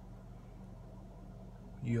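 Quiet room tone with a steady low electrical hum; a man's voice cuts in near the end.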